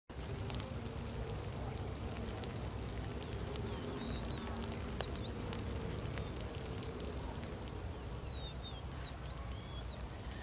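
Quiet ambience of a smouldering hearth fire, with a steady low rumble and occasional faint crackles and clicks from the embers. A fly buzzes on and off, and a few faint high chirps come in the middle and again near the end.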